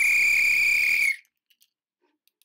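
A single high, breathy note blown on a small flute, held steady for about a second and then cut off.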